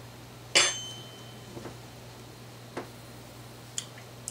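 A metal spoon clinks once against a dish about half a second in and rings briefly. A few light clicks and taps of handling follow.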